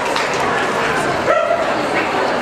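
A dog barks once, a single short bark about two-thirds of the way in, over the steady chatter of a crowd.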